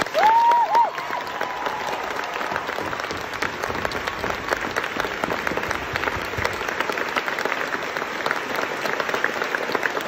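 Audience and cast applauding in a theatre, steady clapping throughout, opening with a brief high-pitched whoop from the crowd.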